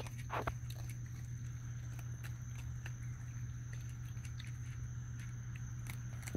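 A steady low hum with a thin, steady high tone above it, and scattered faint clicks and a brief rustle just after the start.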